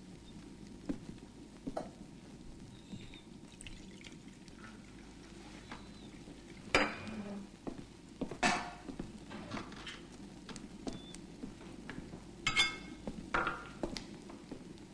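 China cups, plates and cutlery clinking and knocking at a breakfast table in a few scattered strokes, the loudest, with a short ring, about seven, eight and a half and twelve and a half seconds in, over a low steady hum.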